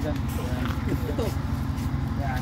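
An engine running steadily at idle, a low pulsing hum, with indistinct voices of people talking over it.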